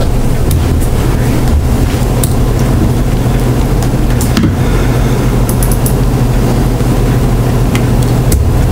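Steady low hum with an even hiss, with a few faint clicks and taps over it.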